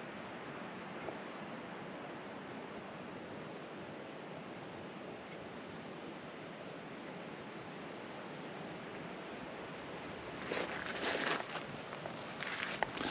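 A steady, even rush of outdoor background noise, with rustling and scuffing near the end.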